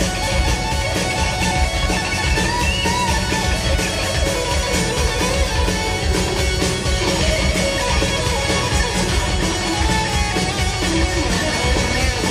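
Live hard-rock band: electric guitar playing a lead line of wavering, bent notes over steady drums and bass, with no singing.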